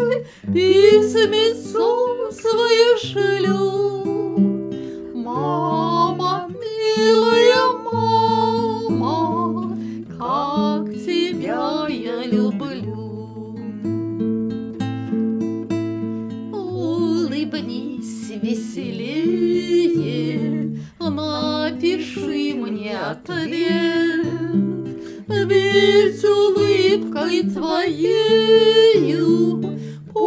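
Two women singing a song together to acoustic guitar accompaniment.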